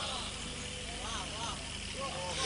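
Faint, indistinct voices murmuring over a steady low electrical hum from the sound system.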